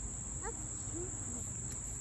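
Steady, high-pitched chorus of summer insects, an unbroken buzz with no pauses.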